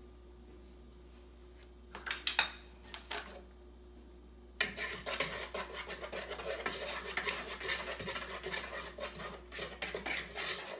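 A few short knocks about two seconds in, then from about halfway a wire whisk scraping steadily round a plastic mixing bowl, stirring dry flour, cocoa powder and salt together.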